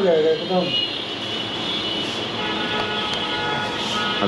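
A small electric motor running steadily: an even whir with faint, thin high tones held at one pitch. A few spoken words come just before it.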